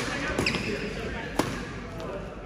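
Badminton rackets striking a shuttlecock in a doubles rally: two sharp hits about a second apart.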